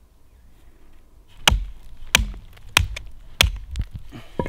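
An axe chopping into a stick of resinous pine fatwood held on a tree stump, splitting off chips: four sharp strikes about two-thirds of a second apart beginning about a second and a half in, with a lighter fifth blow near the end.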